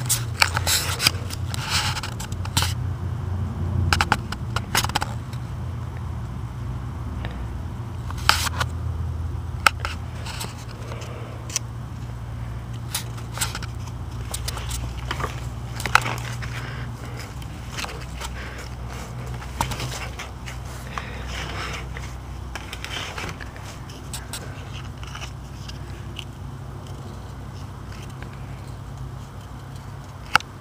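Scattered scrapes and sharp clicks over a steady low hum.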